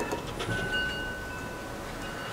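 Faint light clicks as a micrometer's thimble is turned and its spindle closed onto a small turned steel punch, over a faint steady high tone.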